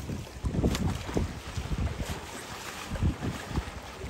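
Gusty wind buffeting the microphone in uneven low rumbles, over water lapping in the shallows.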